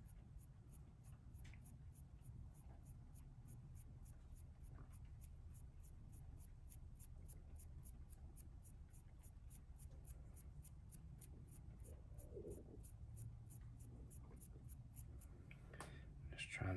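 Near silence: the faint scratchy rubbing of a paintbrush dry-brushing lightly over the raised letters of a small 3D-printed flask, over a steady low room hum.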